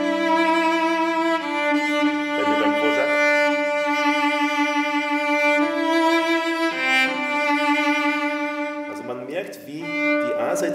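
Cello strung with Thomastik-Infeld Versum Solo strings, bowed in long sustained notes that change pitch about every one to three seconds, then fading out about nine seconds in.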